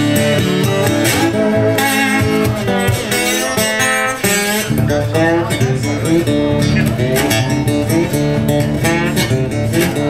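Acoustic slide guitar playing a blues riff, with notes gliding up and down in pitch.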